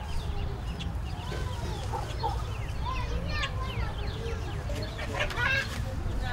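Outdoor neighbourhood ambience: indistinct voices and children in the background, with chickens clucking and short chirps throughout over a low steady rumble, and a louder call about five seconds in.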